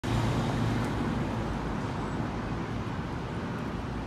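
City street traffic noise: a steady low rumble of vehicle engines and road noise, a little louder in the first second and a half.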